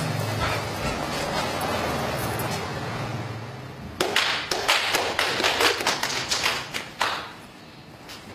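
Hand claps: a short run of scattered, irregular claps lasting about three seconds, starting about halfway in, like a few people applauding a martial-arts demonstration. Before the claps there is a low steady hum.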